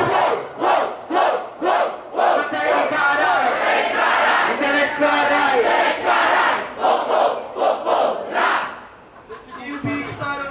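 A crowd shouting in many short, loud bursts, a reaction to the end of a rap verse once the backing beat has stopped. The noise dies down about nine seconds in.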